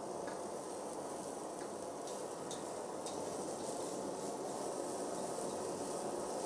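Handheld gas kitchen torch burning with a steady, even hiss as its flame sears a fish fillet on a metal tray.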